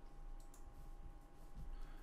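A few faint computer mouse clicks over quiet room tone.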